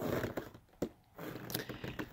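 Faint rustling noise with one brief click a little under a second in, between stretches of near silence.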